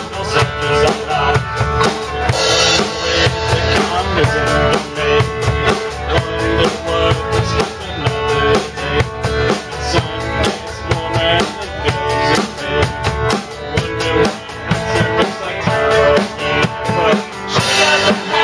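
Live rock band playing an instrumental passage: a drum kit struck hard close by, snare and bass drum keeping a fast, even beat over guitar and bass.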